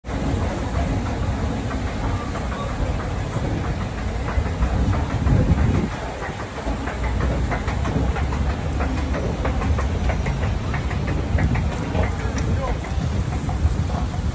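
Escalator running with a steady low rumble, which eases about six seconds in, giving way to busy street noise with people's voices and small clicks.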